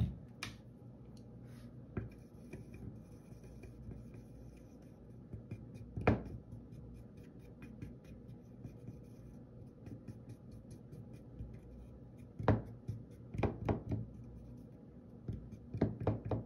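A thin paintbrush stirring paint and fluid medium in a plastic palette well: a soft, scratchy scraping of bristles and ferrule against plastic, broken by sharp clicks and knocks. The loudest knock comes about six seconds in, and a cluster of them comes a few seconds before the end.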